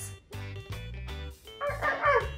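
A woman's voice imitating a seal's bark, one short bark-like call near the end that sounds like a puppy, over background music.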